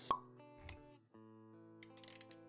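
Intro music with sustained plucked-string notes, cut by one sharp pop sound effect just after the start and a short low thud a little later; the music drops out for a moment about a second in, then carries on.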